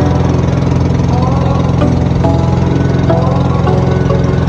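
A boat's engine running steadily at constant speed, a loud, even low drone.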